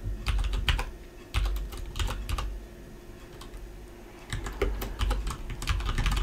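Typing on a computer keyboard: clusters of keystrokes, with a pause of about two seconds in the middle before the typing resumes.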